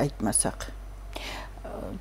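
A woman speaking briefly, then pausing with a soft breath about a second in.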